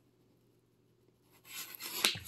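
Near silence, then, about a second and a half in, a soft rubbing rustle from the handheld camera being handled and moved. It grows louder toward the end.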